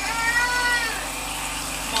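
A cat meowing once: a single drawn-out call of about a second that rises and then falls in pitch.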